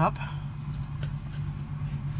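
A steady low machine hum that runs on without change, under the tail of a spoken word at the start.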